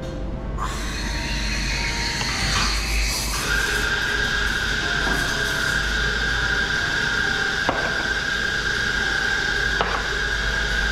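Espresso machine steam wand hissing as it steams milk. A steady high squeal rises over the hiss about three and a half seconds in.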